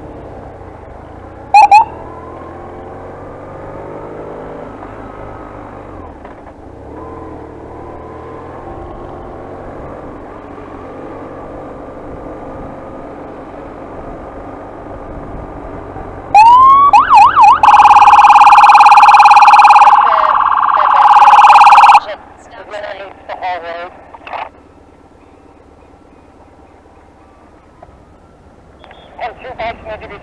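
BMW R1150RT-P police motorcycle's boxer-twin engine pulling away and accelerating through the gears, with a short siren chirp about two seconds in. About halfway through, a very loud electronic police siren sounds for about five seconds: it rises, then holds steady tones, dipping briefly before it cuts off.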